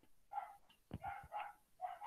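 A dog barking faintly in the background, several short barks about half a second apart.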